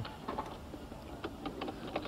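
Faint, irregular crunching clicks of movement over a gravel path.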